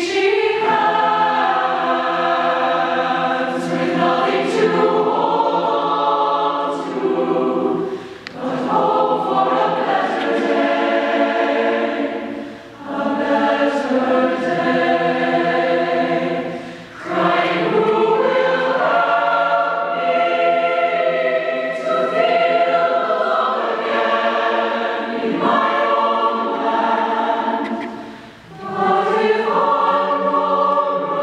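Large mixed choir of men's and women's voices singing held chords in long phrases, with brief breaks between phrases about every four to five seconds.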